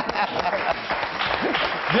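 Studio audience applauding steadily, with faint voices under the clapping.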